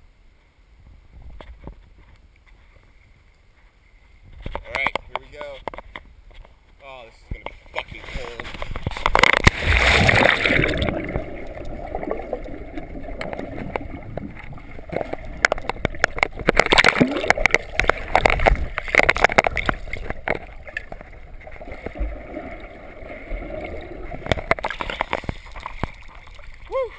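Water sloshing and splashing around a GoPro as it goes under a creek's surface, then muffled underwater water noise with bubbling and many sharp clicks, loudest about ten seconds in. A splash as it breaks the surface near the end.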